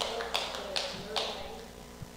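Slow, evenly spaced hand claps from a few people, about two to three a second, dying away after about a second.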